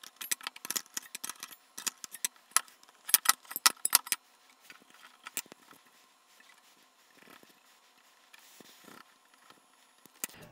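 Sheet-metal panels, small metal brackets and screws being handled and fitted, played back sped up, which makes a dense run of sharp metallic clicks and clinks. The clicks thin out after about four seconds to a few scattered ticks.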